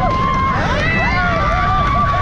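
Roller coaster riders screaming and yelling as the train goes over the top of the wooden coaster's lift hill into the first drop, with one long held scream from about a second in, over a steady low rumble of wind and the moving train.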